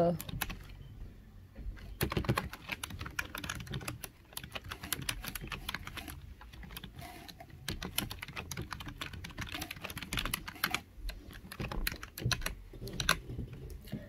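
Irregular, rapid clicking of a computer keyboard being typed on, in quick runs with short pauses.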